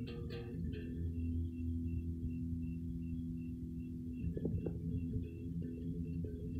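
Amplified electric guitar on a Les Paul-style solid body, a low chord left ringing and sustaining, then a few fresh notes picked about four seconds in.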